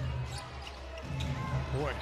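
Basketball bouncing on a hardwood court as it is dribbled in play, a few separate bounces over a steady low arena hum.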